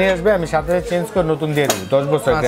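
A man talking, with light metallic clinks as the brass cap of a gas stove burner is handled and lifted off the burner, one sharper clink near the end.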